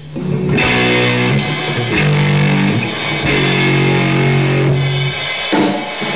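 Rock band playing live: electric guitar chords with bass guitar and drums, starting about half a second in and dropping out briefly near the end.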